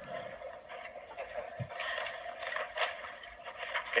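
Faint rustling and shuffling of papers at a podium as notes are searched for. The sound is thin, as if heard through a replayed recording.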